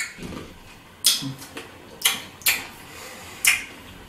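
Mouth noises of someone eating a sour candy with a chewing-gum centre: four sharp, wet smacking clicks spaced roughly a second apart.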